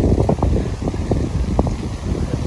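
Wind buffeting the camera microphone: a loud, uneven low rumble with quick gusting spikes, and a sharp knock at the very start.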